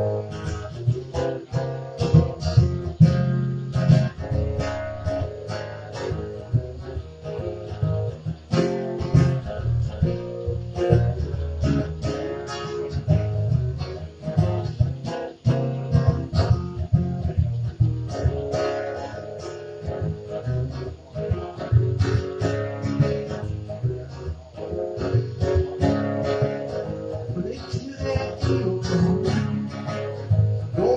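Acoustic guitars playing an instrumental break of a folk-bluegrass song: many quick picked notes over strummed chords, with no singing.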